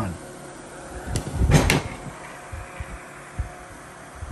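Small electric desk fan running steadily, with a short clatter of handling about one and a half seconds in.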